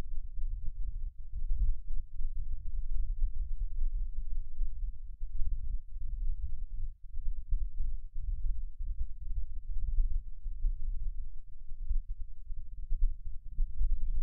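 Low, uneven rumble with no voice, its level rising and falling irregularly throughout.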